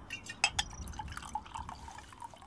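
Red wine poured from a bottle into a glass: a few light clinks of glass near the start, then a trickling, gurgling pour.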